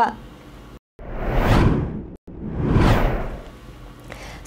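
Two whoosh sound effects from a news bulletin's transition sting, one after the other. Each swells up and fades away over about a second, the first starting about a second in.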